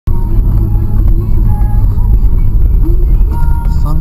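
Cabin noise of a Suzuki Vitara 4x4 driving on a snowy track: a loud, steady low rumble, with music playing over it.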